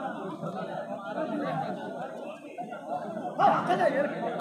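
Spectators' voices chattering and calling out around a kabaddi court, with a louder shout near the end.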